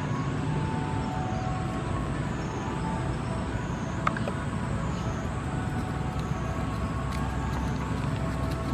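Steady low rumble of outdoor background noise with a faint steady hum, and one sharp click about four seconds in.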